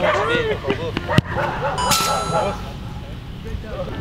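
A sharp knock just after a second in, then a brief metallic clang that rings for about half a second.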